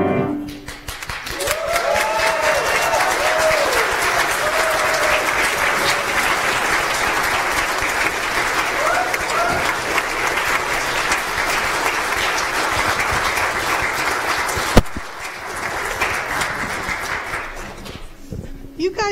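Congregation applauding, with a few voices whooping in the first few seconds; the clapping dies away near the end. A single sharp knock sounds about three seconds before the end.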